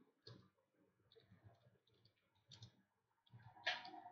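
Near-silent room tone with a few faint, short clicks scattered through it, the loudest near the end.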